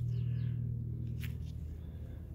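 A steady low hum with no words over it, and a faint brief high chirp near the start.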